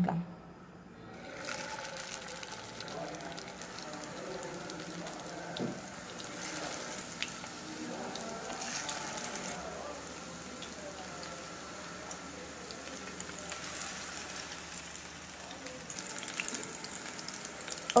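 Marinated chicken wings deep-frying in hot oil in a kadai: a steady bubbling sizzle that starts about a second and a half in as the pieces go into the oil, with a few faint clicks.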